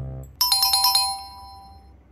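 A quiz-show 'correct answer' chime sound effect: a low note from the preceding music sting, then a quick run of about five bright, high ringing strikes just under half a second in, whose tones ring on and fade away over the next second.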